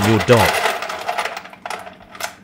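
Refrigerator's bottom freezer drawer being pulled open: a clattering slide that fades over about a second, with a sharp click near the end.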